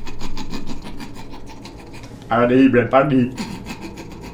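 A fast, even rasping rattle of several strokes a second, with a man's wordless vocal sound about a second long a little past halfway.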